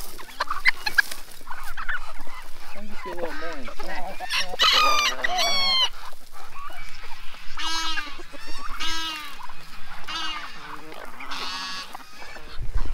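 A mixed flock of chickens and turkeys clucking and calling as feed is scattered among them, with a rooster crowing loudly about four seconds in and shorter calls following.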